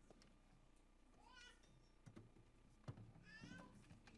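Two faint, high, wavering cries of a person's voice, one about a second in and one past three seconds, with a couple of soft knocks between them.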